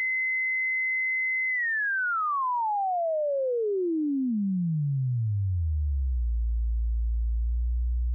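Sine wave from the self-oscillating low-pass ladder filter of a Thor synthesizer, resonance at maximum. A steady high tone near 2 kHz, about a second and a half in, glides smoothly down as the filter frequency is turned down. It settles into a steady sub-bass tone near 60 Hz for the last two seconds.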